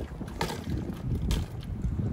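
Wind rumbling on the microphone while a BMX bike rolls along a concrete sidewalk, with two brief scuffs of noise.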